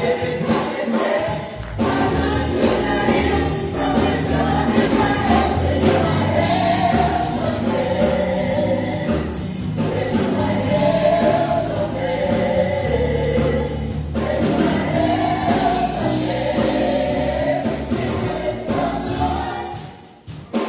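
Gospel praise team of several voices singing together through microphones over keyboard and electric bass accompaniment. The music drops away sharply at the very end.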